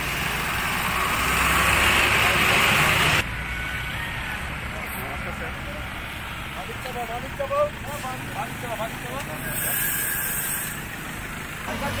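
Roadside traffic: vehicle engines and tyre noise, with faint voices. A louder, even noise fills the first three seconds and cuts off abruptly, then a quieter steady background follows.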